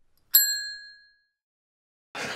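A single ding sound effect, struck once about a third of a second in and ringing out over about a second, marking an on-screen counter ticking up by one. The audio around it is silent.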